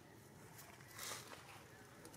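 Quiet outdoor ambience with a brief rustling crackle about a second in.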